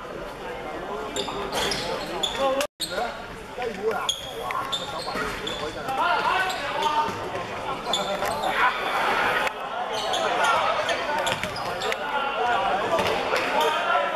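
Basketball game in a sports hall: a ball bouncing on the hardwood floor, sneakers squeaking and players shouting. The sound drops out for a moment about three seconds in.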